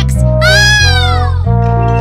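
Bouncy children's cartoon music with a steady bass line, over which a high-pitched cry rises and then falls in one long arch lasting about a second.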